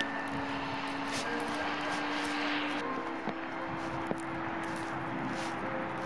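Steady hiss of distant city traffic, with a faint low hum running underneath and a couple of light clicks a little past the middle.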